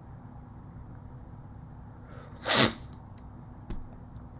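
A single short, explosive breath sound from a person, sneeze-like, about two and a half seconds in, then a small click near the end, over a faint steady hum.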